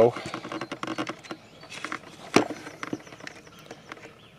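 Quiet outdoor ambience with scattered small clicks and rustles, one sharper click a little over two seconds in, and faint high chirping near the middle.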